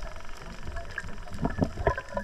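Scuba regulator exhaust bubbling underwater as the diver breathes out, a run of bubble bursts in the second half over a steady underwater rumble.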